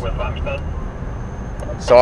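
Steady low road and engine rumble inside a moving car's cabin, with a thin high-pitched whine through most of it.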